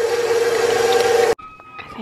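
Electric stand mixer running at a steady speed with a humming motor whine, its flat beater mashing potatoes in a stainless steel bowl. The sound cuts off suddenly about a second and a half in.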